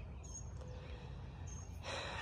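Quiet outdoor garden background with two faint, brief high chirps, one about a quarter second in and one about one and a half seconds in, and a breath taken just before speech resumes.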